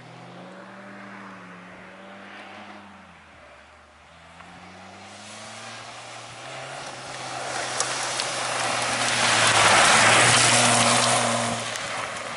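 Rally-type race car's engine revving hard on a gravel track, its pitch rising and falling with throttle and gear changes and dipping about three seconds in. It grows steadily louder as the car approaches and passes close, loudest near the end, with the hiss of tyres sliding on loose gravel.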